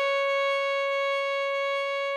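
A single long violin note, C#, held steady on one pitch.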